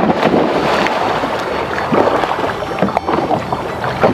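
A man diving from a boat into a lake: a sudden splash right at the start, then water splashing and churning, with wind on the microphone.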